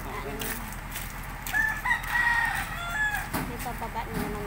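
A rooster crowing once, a single drawn-out call of about a second and a half that starts about a second and a half in.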